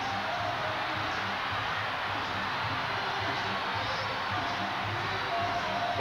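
A large indoor arena crowd making steady noise, with music playing through it.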